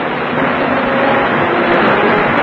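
Aircraft flying over in formation: a steady engine drone.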